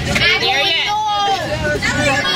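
Several children's voices calling out and chattering over one another inside a moving coach, over the low, steady road noise of the bus.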